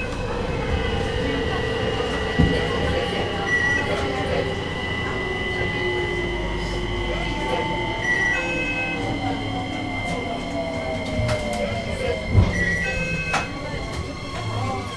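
JR Kyushu 815 series electric train running on rails, the whine of its inverter-driven motors falling in pitch as it slows, over steady wheel rumble. Two knocks come at about two and twelve seconds in. Short beeps repeat every four or five seconds.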